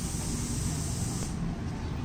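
Steady background hiss with a low rumble underneath. The highest part of the hiss cuts off suddenly just over a second in.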